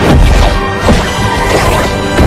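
Film sound effects of a car crash: heavy metal crashes, one right at the start and another about a second in, over background music.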